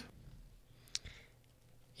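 Near silence: room tone, with one short sharp click about a second in.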